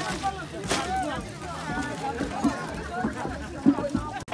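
Voices talking in the background throughout, with a few short knocks, the loudest shortly before the end.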